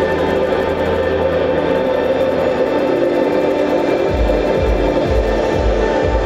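Ambient drone music from two electric guitars played through effects pedals, a dense wash of sustained tones. A low pulsing electronic beat comes in about four seconds in.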